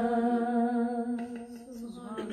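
A woman's unaccompanied voice holding one long note at the close of a line of an Urdu naat. The note weakens about halfway through and dies away near the end.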